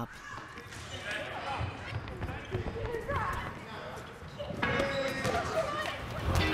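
A large ball bouncing on a wooden sports-hall floor in repeated thuds, with children's voices echoing in the hall.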